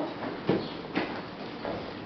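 Thumps and scuffs of grapplers' bodies and hands on gym mats during Brazilian jiu-jitsu sparring, with the loudest thump about half a second in and another about a second in.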